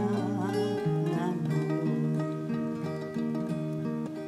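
Mandolin and acoustic guitar playing the accompaniment to an Irish traditional ballad between sung lines, plucked notes over chords, with a woman's sung note wavering and trailing off in the first second.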